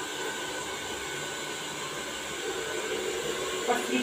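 Handheld hair dryer blowing steadily on a client's hair, an even rush of air with a faint steady tone. A voice begins near the end.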